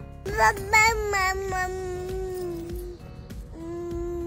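A baby babbling: a quick run of short, high-pitched syllables, then a long drawn-out vowel, and another held note near the end, over soft background music.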